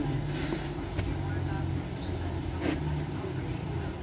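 Indistinct background voices over a steady low rumble, with a few faint clicks.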